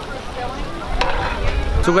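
Aloo tikki patties sizzling as they shallow-fry in oil in a cast-iron skillet, with one sharp click about a second in.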